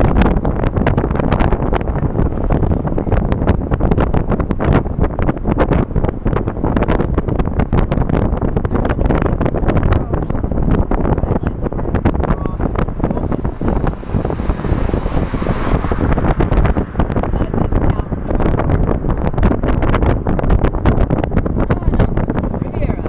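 Wind buffeting the microphone over the road and engine noise of a car driving, a loud steady rumble with constant irregular gusts. A faint high falling tone passes about two thirds of the way through.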